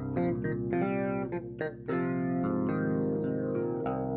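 GarageBand's 'Flying Clav' software instrument, a clavinet emulation, played: a run of quick, sharp plucky notes, then a held C minor add 11 chord.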